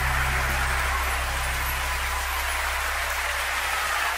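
Audience applause over the last sustained chord of a live pop ballad. The low notes of the music die away in the first two seconds, leaving the applause.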